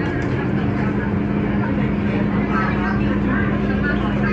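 Steady hum of a standing MTR Disneyland Resort Line train's onboard equipment, with one constant low tone.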